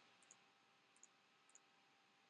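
Near silence broken by three faint computer-mouse clicks, spread over the first second and a half.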